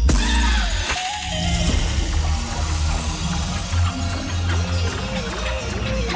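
Electronic dance music from a live DJ set over a club sound system, with heavy bass throughout. A sharp hit opens it, followed by falling synth glides, and about halfway through a fast repeating wavering synth figure comes in.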